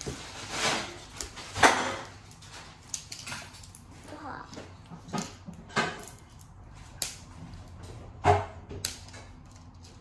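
Plastic toy capsule being pried and peeled open by hand: scattered crinkling with about half a dozen sharp plastic clicks and snaps. The capsule is stiff and hard to open.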